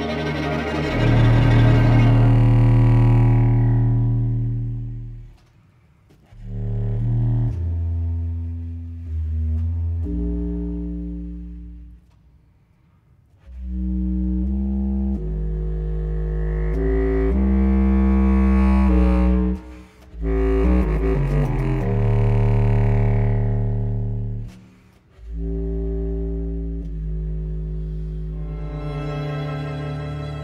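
Eppelsheim contrabass clarinet playing long, low held notes in a slow passage, broken by several short rests, with the string ensemble and baritone saxophone sounding with it at the start and again in the second half.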